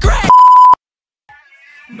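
A sung line cut off by a loud, steady electronic beep lasting about half a second, the kind of bleep tone dropped into edited videos. A short silence follows, then music fades in near the end.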